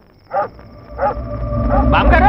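A dog barking twice, two short yelps falling in pitch, about a third of a second and a second in. A low rumble builds underneath from about a second in.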